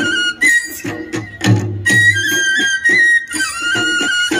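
Tripuri folk music for the Hojagiri dance: a flute plays a high, stepping melody over regular drum beats.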